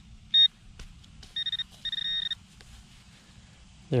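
Metal-detecting pinpointer probe beeping: a short beep, then a quick run of beeps and a longer steady tone as it closes in on a buried metal target.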